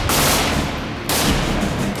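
Automatic rifle fire in two long bursts, with a brief break about halfway through.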